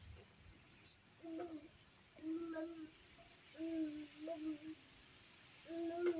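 A toddler's short wordless hums, 'mm' sounds, about five in a row, each held on one note for under a second.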